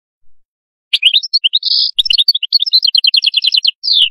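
A European goldfinch singing, starting about a second in: quick twittering notes and a short buzzy note, then a fast run of repeated notes near the end.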